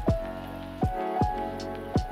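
Electronic intro jingle for an animated channel logo: a beat of sharp hits that each drop steeply in pitch, over held synth tones.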